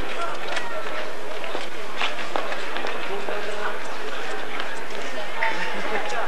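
Distant, unintelligible shouts and calls of rugby players on the pitch as they pack down for a scrum, over a steady hiss, with a few brief sharp knocks.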